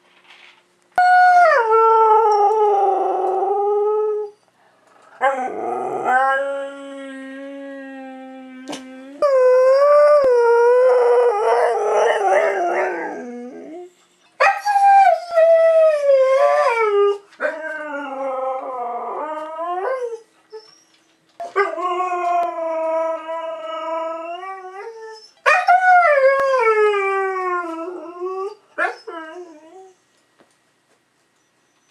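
A Siberian husky howling and 'singing' in about seven long, wavering calls with short breaks between them, most sliding down in pitch as they end.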